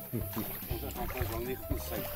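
Indistinct voices of people chatting and laughing.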